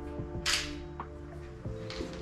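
A single DSLR shutter release about half a second in, a short clack of mirror and shutter fired at 1/500 s, followed by a couple of faint clicks, over background music with steady held notes.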